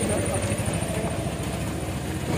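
A car's engine running at low speed close by, a steady low rumble.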